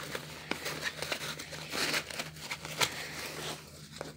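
Backpack fabric rustling and scraping as a reflective strip is drawn out of a small zipped pocket at the top of the bag, with a few sharp little clicks in between.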